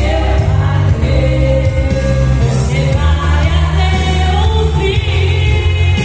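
A woman singing into a handheld microphone over instrumental accompaniment with a strong, steady bass.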